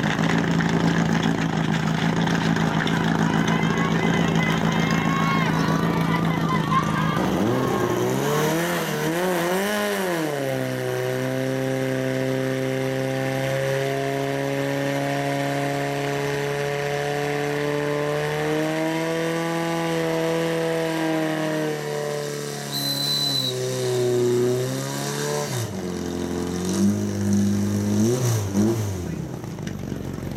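Portable fire-pump engine running steadily, then revved up hard about seven seconds in and held at high revs while it pumps water through the attack hoses. It drops back about twenty-five seconds in and is blipped up and down a few times near the end.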